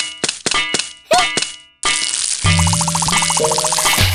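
A quick run of sharp metallic dings and clicks, then a steady hiss of a thin stream of liquid falling onto pavement from about two seconds in, with rhythmic cartoon music and a bass line coming in just after.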